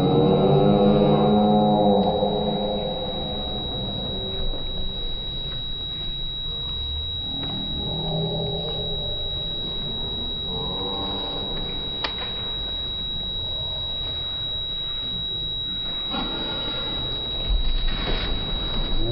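Slowed-down audio from the karate hall: voices stretched into deep, drawn-out tones, loudest at the start, with a few shorter ones later, over a steady thin high whine and low room rumble.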